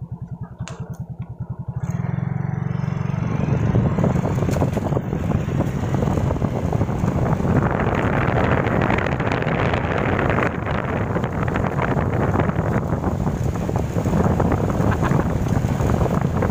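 Suzuki Raider J 115 Fi motorcycle's single-cylinder four-stroke engine pulling away, its slow firing pulses giving way to a steady run as the bike picks up speed. Wind rush on the microphone builds from about four seconds in.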